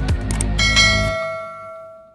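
A bright bell chime sound effect, the notification-bell sting of a subscribe-button animation, strikes about half a second in and rings out, fading over the next second and a half. Background music plays under its start and stops about a second in.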